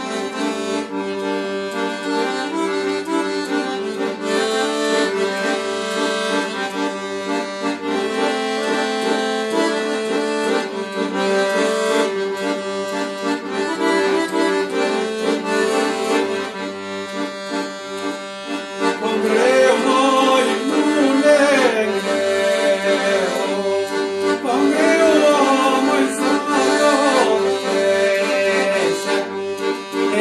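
Royal Standard piano accordion playing an instrumental introduction to an Albanian folk song: held bass and chord tones under a right-hand melody. From about 19 seconds in, the melody grows louder and more ornamented.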